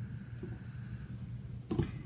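Quiet room tone with a low steady hum and the faint rustle of a clothes iron being slid over fabric on an ironing board. There is one short soft sound near the end.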